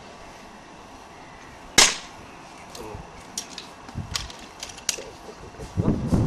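A single sharp rifle shot at a target about two seconds in, followed by a few faint clicks.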